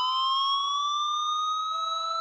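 A break in an electronic dance mix: the beat drops out, leaving a sustained synthesizer tone that slowly rises in pitch, siren-like, with a lower held note joining near the end.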